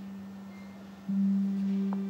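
Background score: a low, pure held note slowly fading, then sounding again about a second in.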